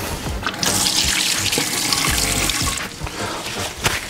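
Water running from a bar-sink tap for about two seconds, a steady hiss that stops about three seconds in, over faint background music.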